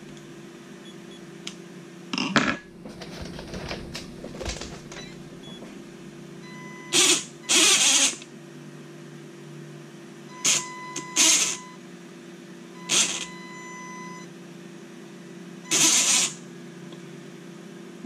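Electric drive motor and geared drivetrain of an Axial Capra 1.9 RC rock crawler, run in about six short throttle blips, each under a second, with a faint steady whine at times between them. This is a bench test of the motor after its wires were swapped to correct a reversed direction.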